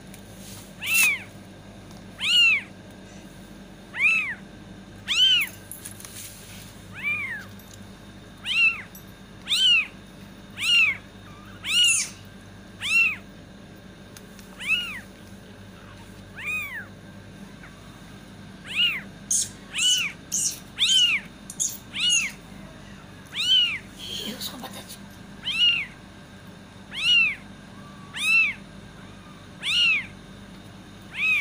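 Kitten mewing: a string of short, high-pitched calls, each rising then falling in pitch, about one a second, coming quicker for a few seconds past the middle.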